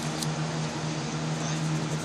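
A steady low hum with an even hiss, and a single short click about a quarter of a second in.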